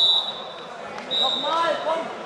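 Referee's whistle blowing a steady high note in a sports hall: the end of one blast right at the start and a second blast about a second in, over shouting voices.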